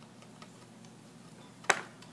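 Faint, scattered small ticks and scratches from a gerbil moving around its wooden ledge in a wire cage, then one sharp, loud knock near the end.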